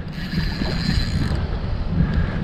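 A spinning reel working as a big sheepshead is played beside a kayak, a light mechanical whir and clicking over a steady low rumble.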